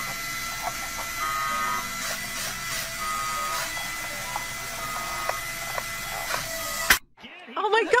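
Steady whir of a small electric motor, the suction fan of a wall-climbing toy RC car running on a ceiling, with scattered small clicks. It cuts off suddenly with a sharp click about seven seconds in.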